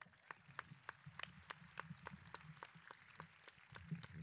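Faint, scattered applause from an audience, with single claps heard several times a second. A low bump at the very end as the podium microphone is handled.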